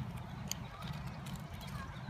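Quiet outdoor background: a steady low rumble with a single sharp click about half a second in and a few fainter ticks.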